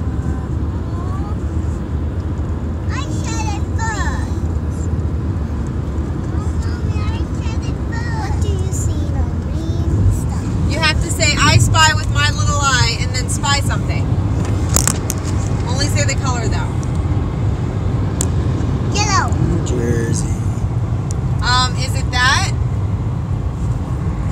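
Steady low road and engine rumble inside a car cabin at highway speed, with high children's voices and laughter breaking in several times, busiest around the middle.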